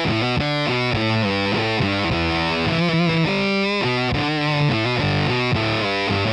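Gretsch Electromatic Corvette solid-body electric guitar with Mega'Tron pickups, played through a distorted amp: a fast rock riff of quickly changing notes and chords.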